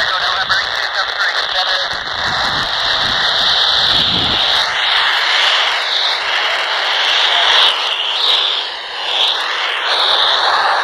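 The FM downlink of the AO-91 amateur radio satellite, heard through a Baofeng handheld's speaker as loud static hiss. Choppy voice fragments come through in the first few seconds, and from about halfway on, whistling tones slide up and down in pitch.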